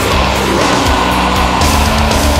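Gothic metal band recording playing a loud, dense passage at an even loudness.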